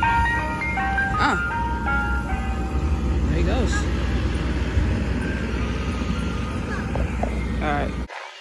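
Ice cream truck's jingle playing from its loudspeaker, clearest in the first second or two, over the steady low rumble of a vehicle engine.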